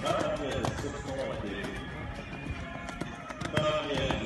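Hoofbeats of a horse cantering on arena sand, under indistinct voices and music.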